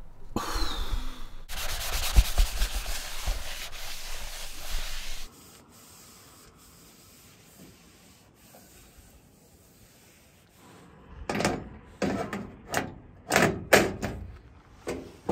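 A paper towel rubbed over the metal surface of a two-burner camp stove to wipe it down. There are a few seconds of steady rubbing, then a quiet pause, then a run of short wiping strokes near the end.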